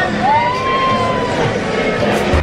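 A single high vocal note that rises quickly and then holds for about a second before fading, over a busy background of crowd chatter.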